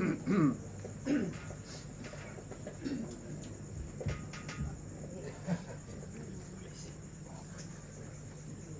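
A woman's amplified reciting voice trails off within the first second or so. It leaves a steady high-pitched cricket trill, with faint scattered voice fragments and small clicks beneath it.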